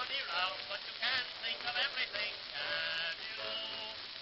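A popular song with a singer and instrumental accompaniment. The singing gives way to held instrumental notes about halfway through.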